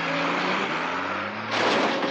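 Film sound effect of a heavy bus engine running under load, its low pitch slowly rising. About one and a half seconds in, a sudden loud burst of noise cuts in.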